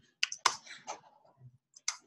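Computer keyboard being typed on: a handful of quick, uneven key clicks as a few characters are entered.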